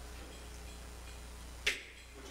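A single sharp tap at the wooden pulpit near the end, over a low steady hum.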